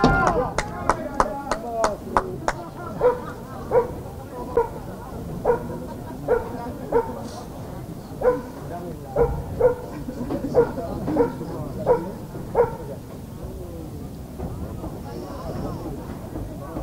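A dog barking: a quick run of sharp barks, then single barks about once or twice a second that stop a few seconds before the end.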